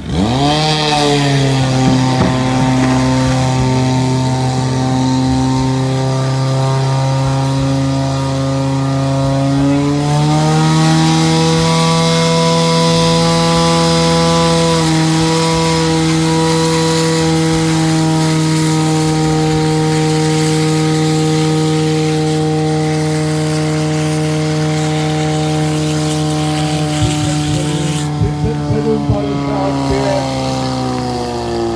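Portable fire pump engine revving up sharply, then running at full throttle while it feeds water to the hose lines. Its pitch climbs again about ten seconds in and holds steady, easing slightly near the end.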